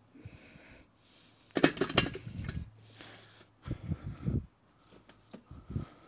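A metal-framed weight bench being grabbed and tipped upright by hand: knocks and rattles of its frame, loudest for about a second from one and a half seconds in, with shorter bursts around four seconds and again near the end.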